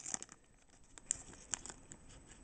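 Faint crinkling and tearing of a foil booster-pack wrapper being opened by hand, with a few brief crackles about a second in.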